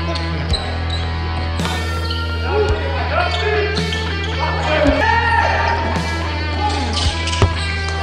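Live basketball game sound: the ball bouncing and sneakers squeaking on the hardwood court, with background music playing over it.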